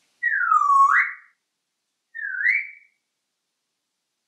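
African grey parrot whistling twice, each whistle swooping down and then back up. The first is about a second long, the second, about two seconds in, is shorter.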